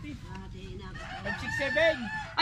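A rooster crowing, starting about a second in.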